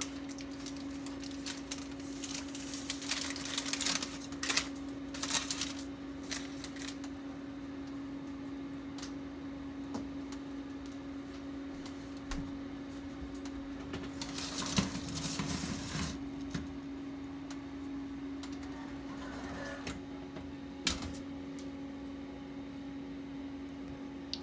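Parchment paper crinkling and rustling as dough wrapped in it is set into a hot cast-iron skillet on an oven rack and tucked in, in two spells, over a steady low hum. A single sharp knock near the end as the oven door shuts.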